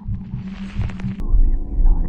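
Horror-film soundtrack drone: a loud, low, throbbing hum. About a second in it changes abruptly, with a click, to a heavier pulsing rumble under steady droning tones.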